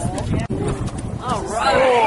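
Several people's voices talking and exclaiming over one another, with one drawn-out, rising-and-falling cry in the second half and a few knocks near the start.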